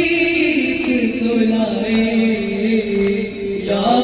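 A young man's solo voice chanting an Urdu noha (mourning lament) into a microphone. He draws out one long vowel that slides down and is then held steady for about two seconds, breaking off just before the end.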